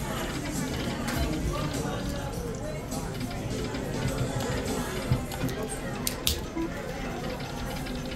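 Casino floor ambience: background chatter mixed with slot machine music, with a few sharp clicks a few seconds in.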